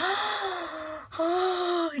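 A woman gasping twice in exaggerated amazement, each gasp drawn out for about a second, breathy with a voiced tone through it.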